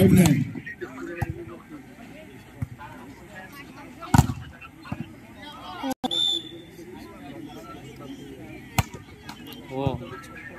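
Sharp slaps of a volleyball struck by hand: a jump serve at the start, another hard hit about four seconds in and one more near the end, over the chatter and shouts of players and crowd.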